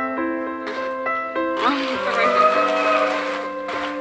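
Gentle piano music playing. About a second and a half in, a loud burst of noise with a rising, then held, voice-like call cuts in for about two seconds.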